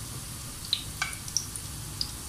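Breaded potato-and-chicken cutlets shallow-frying in hot oil in a flat pan: a steady sizzle with a few sharp clicks.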